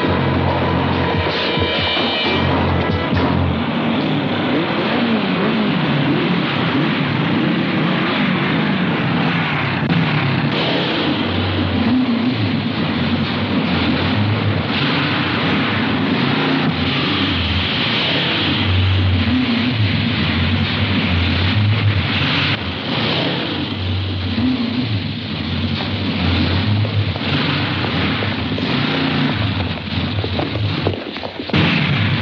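Film soundtrack: loud action music mixed with the noise of a vehicle engine whose pitch rises and falls.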